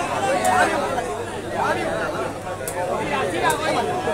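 Crowd of spectators chattering, many voices talking over one another.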